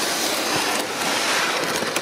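A cardboard box loaded with electrical ballasts being slid across the ground, making a steady, even scraping.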